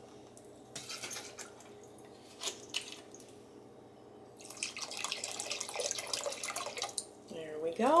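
Lemon juice poured from a glass bottle into a pot of berry juice and sugar, splashing steadily for about two and a half seconds in the second half. A couple of light clicks come before the pour.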